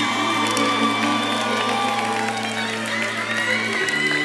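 Background music of sustained held chords that change near the end, under an audience cheering and clapping with a few whoops.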